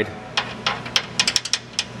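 A quick, irregular run of small metallic clicks and ticks, more than a dozen, bunched most densely around the middle.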